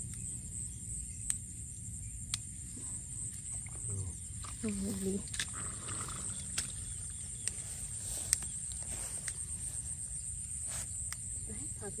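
Leafy herb stems picked by hand, heard as scattered short sharp snaps, over a steady high-pitched insect trill and a low rumble. A brief voice sound comes about five seconds in.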